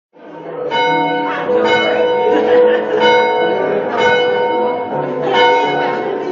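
Church bells ringing a peal: struck notes follow each other about every half-second to second, each ringing on and overlapping the next.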